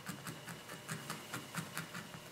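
Faint, quick ticking, about five light clicks a second, of a barbed felting needle jabbing through wool into a burlap-covered felting pad.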